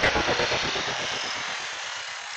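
Logo-reveal sound effect: a rushing whoosh over a low rumble, slowly fading out.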